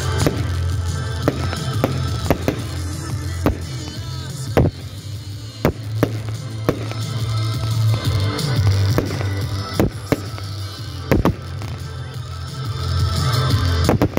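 Aerial fireworks bursting, about a dozen sharp bangs at irregular intervals, over steady background music.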